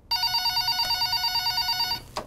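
Office desk telephone ringing: one long electronic trilling ring with a fast warble, cut off abruptly near the end as the handset is picked up.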